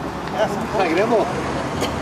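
People's voices talking among a gathering of cyclists, the chatter loudest around the middle, over a steady low rumble.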